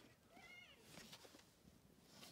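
A faint, short high-pitched call about half a second in, rising then falling in pitch, over near-silent room tone.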